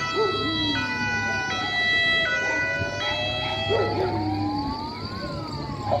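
Two emergency vehicle sirens sounding together. One is a two-tone siren, switching between a high and a low note about every three-quarters of a second. The other is a slow wail that falls, rises again and falls.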